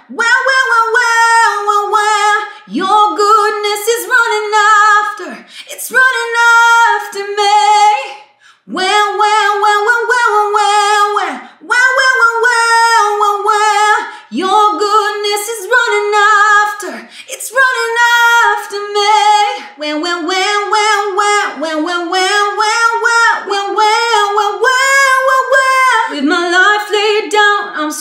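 A woman singing a vocal exercise unaccompanied on repeated "wah" syllables, in short sung phrases with brief breaths between them. In the second half the phrases climb higher in pitch in steps.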